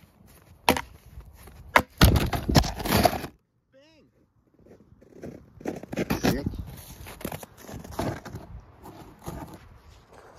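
Two axe blows into a log, then a loud splintering crunch lasting about a second as the cut goes through and the log breaks. The sound then cuts off abruptly, and after a short gap a different, voice-like sound follows.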